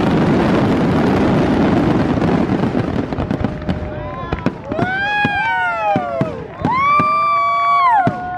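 Aerial fireworks bursting: a dense, loud crackling barrage from glittering shells for the first three or four seconds, then thinner, separate bangs and crackles.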